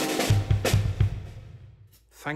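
The tail of a brass band's final chord, then a closing fill on a drum kit: about four low drum strikes within the first second, with snare or cymbal crack on two of them, ringing away.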